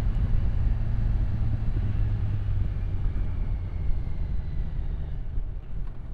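Kawasaki Ninja 1000SX's inline-four engine running at steady road speed, heard with wind and road noise on a helmet-mounted microphone. The sound falls off over the last couple of seconds as the bike slows.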